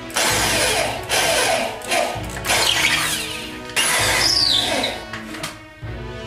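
Wooden spice grinder twisted over a plate, giving about five loud, gritty grinding bursts in quick succession, over background music.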